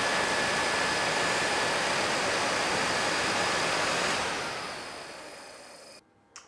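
Kawasaki ZX-6R electric radiator fan running on a Honda CX500, a steady rush of air with a faint high whine from the motor. It is turning the right way, pulling air through the radiator. The sound fades away over the last two seconds.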